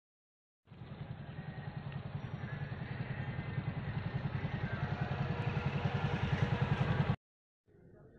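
An engine running with a fast, even beat, slowly getting louder and then cut off abruptly near the end.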